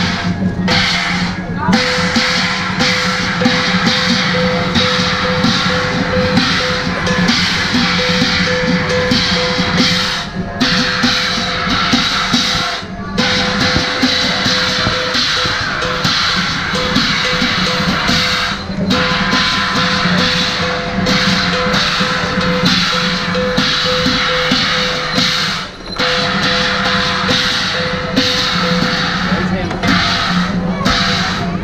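Chinese percussion band accompanying a qilin dance, playing continuously with a drum and crashing cymbals, over a steady ringing tone that breaks off briefly a few times.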